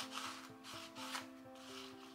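Craft knife blade drawn across paper, a few short strokes, the clearest about a second in.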